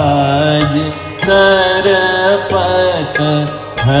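A male voice singing long, gliding, ornamented notes of a Hindi devotional song in Raag Malkauns over instrumental accompaniment with a steady low drone.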